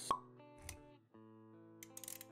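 Intro jingle for an animated title graphic: held music notes with a sharp pop sound effect just after the start, a softer low thud a little later, and a brief break in the music about a second in.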